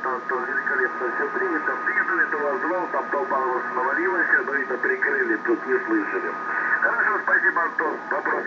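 A voice received over single-sideband shortwave radio and heard from the transceiver, thin and band-limited as SSB sounds, with a steady whistle running under it that stops about seven seconds in.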